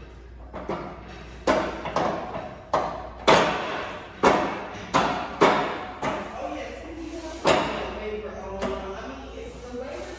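Metal clanks of gym weight equipment, sharp knocks coming irregularly about once a second, each ringing briefly.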